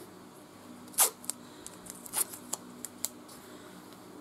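A few sharp clicks and crackles of masking tape being torn and pressed down over water-soluble stabiliser on the embroidery hoop. The loudest comes about a second in, over a faint steady hum.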